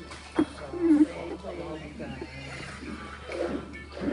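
A voice making wordless, drawn-out sounds, loudest about a second in, after a sharp click about half a second in.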